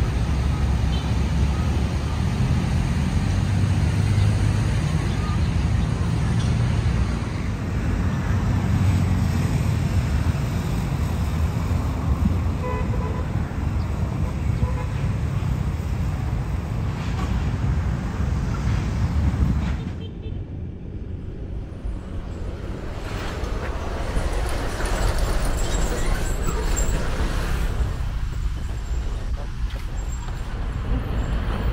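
Busy city road traffic: a steady rumble of passing cars and buses. It dips for a few seconds about two-thirds of the way in, then builds again.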